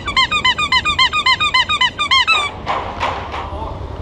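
Bicycle brake squealing in a fast, even series of short squeaks, about six or seven a second, as the bike slows, stopping about two and a half seconds in. A low rumble of wind and road noise runs underneath.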